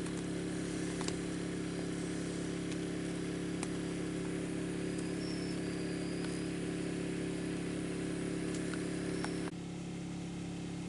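A small engine running steadily, a constant low hum, with a few faint clicks; the hum drops slightly near the end.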